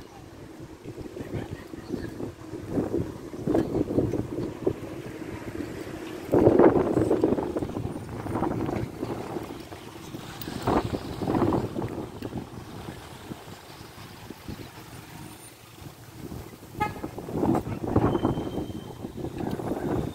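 Street traffic on a busy town street: car engines running and passing, with the loudest pass about a third of the way in.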